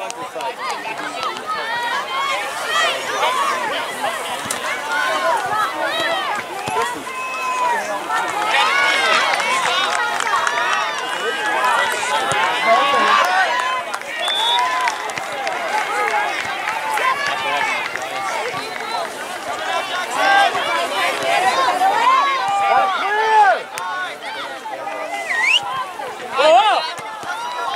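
Many overlapping voices of players and spectators calling and talking at a distance, a continuous babble with no clear words.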